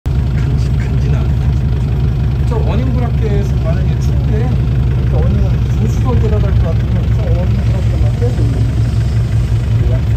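A SsangYong Rexton Sports Khan pickup's diesel engine idling steadily, a deep even rumble. Voices can be heard faintly over it.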